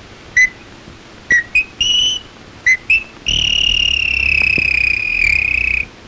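A young girl whistling an imitation of birdsong: six short whistled notes, some rising, then one long whistle held for about two and a half seconds that falls slightly in pitch.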